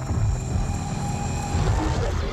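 Dense, loud low rumbling drone from a horror trailer's sound design, with faint steady high electronic tones above it.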